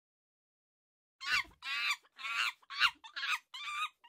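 A quick run of about six short, high, warbling animal-like calls, starting a little over a second in after a second of silence.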